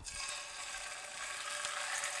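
Mackerel fillets sizzling steadily in hot oil in a frying pan, laid skin side down to crisp the skin.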